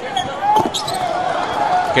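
A basketball bouncing on a hardwood court in a busy arena, with steady crowd noise behind it.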